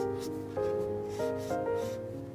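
Fine-tip marker scratching across journal paper in several short strokes while drawing small waves, over soft melodic background music.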